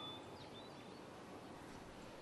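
Faint background ambience with a few short, high bird chirps scattered through it.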